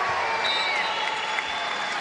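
Arena crowd cheering and applauding as a volleyball point is won, with a few thin whistle tones rising over the noise in the first second.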